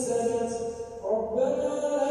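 A man's voice chanting Quranic recitation in long, drawn-out melodic notes, as an imam leads the congregational prayer; the voice pauses briefly about a second in, then takes up a new held note.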